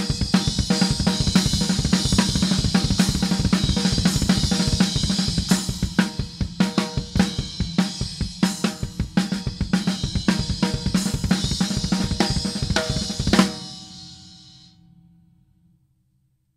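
Drum kit played fast: double bass drum under alternating-hand strokes on snare and crash cymbals, a triplet feel with doubles thrown in to make sixteenth notes. The playing stops about thirteen seconds in on a last loud cymbal crash that rings and dies away.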